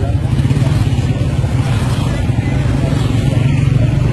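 A motor vehicle's engine running steadily, a loud low drone with wind and road noise over it.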